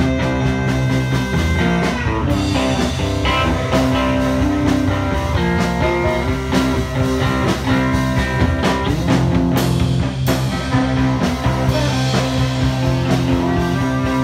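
Live rock band playing an instrumental passage: a drum kit keeping a steady beat with cymbal crashes, over electric bass, electric guitar and saxophone.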